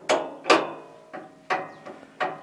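Metal parts of a wood splitter being fitted and moved by hand: two sharp clacks about half a second apart with a short ring after them, then two lighter knocks near the end.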